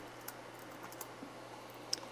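Faint computer keyboard keystrokes, a few scattered clicks, as a number is typed into a software field.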